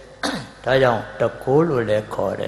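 A man clearing his throat close to a microphone: a rough, throaty onset followed by a couple of short voiced sounds.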